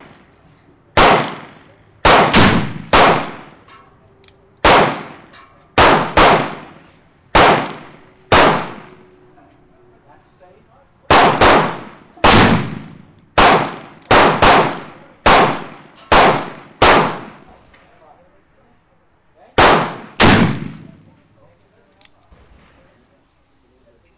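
Gunshots from a black powder percussion cap-and-ball revolver loaded with a pre-lubricated felt wad and round ball: about two dozen sharp reports in irregular clusters, each with a short ringing tail.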